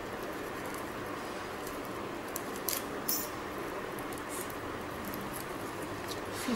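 Faint rustling and light crackles of dry broom bristles being handled and pressed onto glued paper, over a steady background hiss. Two brief crackles come near the middle.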